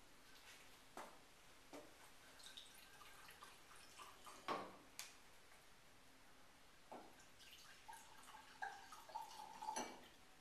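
Red wine poured from a bottle into a tasting glass, a trickling pour that runs through the last two seconds. Before it, a few sharp knocks of glass bottle and glassware on the counter, the loudest about four and a half seconds in.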